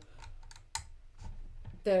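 Small irregular plastic clicks and taps of LEGO pieces being handled and pressed onto the Saturn V model, with one slightly louder knock about a second in.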